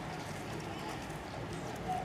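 Horse hooves clip-clopping on the street over a steady outdoor background with indistinct voices.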